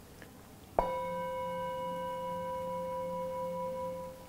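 Metal singing bowl struck once with a striker about a second in, then ringing with a steady clear tone and overtones until a hand on the bowl stops it near the end. The strike marks the close of a one-minute meditation period.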